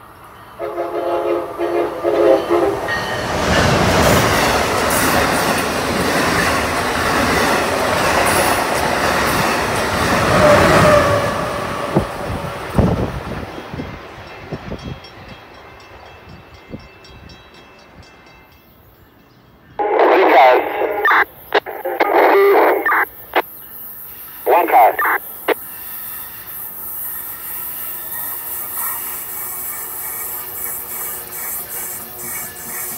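Amtrak Acela trainset sounds a short horn blast, then runs through the station at speed with a loud rush of wheels and air lasting about ten seconds before fading. About twenty seconds in, a train horn sounds a string of short and longer blasts over about five seconds.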